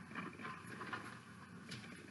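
Faint rustling and a few light clicks of small objects being handled while rummaging for a hair clip.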